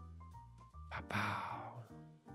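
A person's audible breath, a soft sigh-like exhale, about a second in and lasting just under a second, over faint background music with sustained notes.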